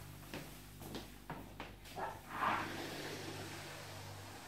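A few light footsteps and knocks as people walk out through a door, with a short rustle about two and a half seconds in, over a steady low room hum.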